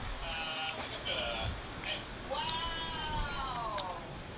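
An animal calling: two or three short calls, then one long call that rises and then falls in pitch.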